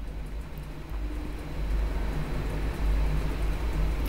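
A low, steady rumble with a faint hiss over it, growing a little louder about a second in.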